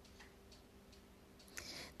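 Near silence: room tone with a faint steady hum, and a soft breath drawn in near the end.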